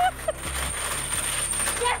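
Haunted-house scare effect: a rattling, hissing noise lasting about a second and a half, over a low steady drone.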